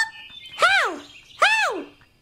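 A person's voice giving two long, high-pitched squeals, each rising then falling in pitch, about a second apart.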